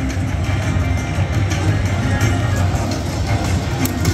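Video slot machine playing its bonus-round music and electronic reel-spin sounds while a free spin plays out in a hold-and-spin feature, over a steady low background din.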